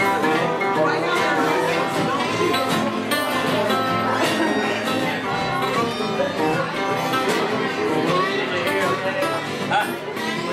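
A group of acoustic guitars and other string instruments playing a song together in a live acoustic jam, strummed and picked in a dense, steady ensemble.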